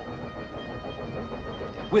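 Railway train running along the track: a steady noise with no distinct beats.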